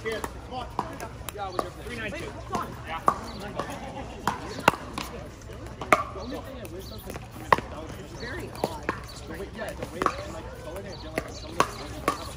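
Pickleball paddles popping against hard plastic balls on several courts at once: sharp, irregular pops a little over one a second, some louder and nearer than others, over a murmur of players' voices.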